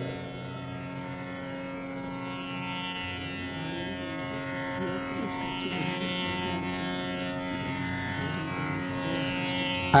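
Tanpura drone: the plucked open strings sound a steady, unchanging chord rich in overtones, with a shimmer in the upper range that swells and fades.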